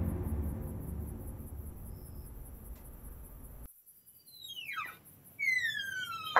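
Dramatic background music fading away, then cut off abruptly a little past halfway. Near the end come two high squeaks, each sliding down in pitch.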